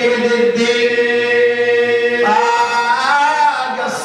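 A man's solo voice chanting an unaccompanied Shia lament (ritha') into a microphone. He holds one long note for nearly two seconds, then steps up in pitch and wavers in ornamented turns.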